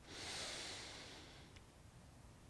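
A man's single soft breath out, picked up close by a headset microphone, fading away over about a second as he holds the effort of a side-lying inner-thigh lift.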